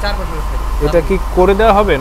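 A man speaking over a steady low rumble.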